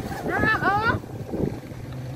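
A baby macaque giving two short, high-pitched coos about half a second in, each bending in pitch.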